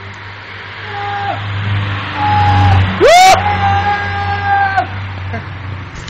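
A person yelling over a low steady hum: short held calls, then about halfway through a loud yell that shoots up in pitch and is held for about a second and a half.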